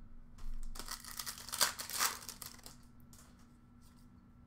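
Crinkling and rustling of trading cards and their foil pack wrapper being handled, with a few sharp clicks, mostly in the first half before fading out.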